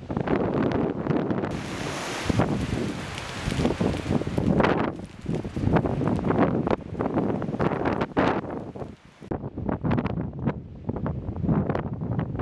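Strong gusty wind on the microphone at a burning wildfire: a rushing, buffeting noise with many short cracks. A brighter hiss comes in about a second and a half in and fades a few seconds later, and the sound briefly drops and changes character near nine seconds in.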